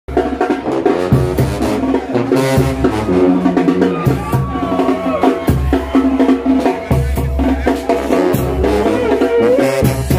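Live brass banda playing: sousaphones carry a low bass line under the horns, with regular drum and cymbal beats.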